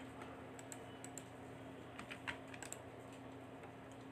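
Faint, irregular clicks of a computer keyboard being typed on, over a low steady hum.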